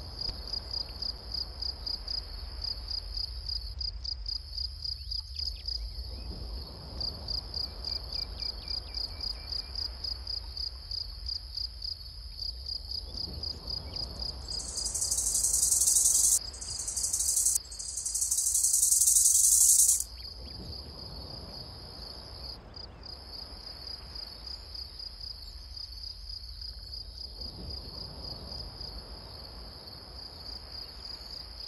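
Insect chorus: crickets chirping in a steady, rhythmic trill over a low rumble. About halfway through, a much louder, higher-pitched insect buzz swells up three times in quick succession and then cuts off sharply.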